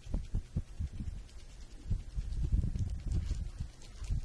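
Hands and a sleeve sweeping close past the microphone, giving a run of soft, irregular low thumps and rumbles that grow denser about halfway through.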